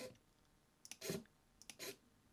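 Wheeltop EDS TX wireless electronic groupset shifting: twice, a soft shifter-button click followed by a brief motor whir as the derailleurs move, the front derailleur auto-trimming as the rear shifts up.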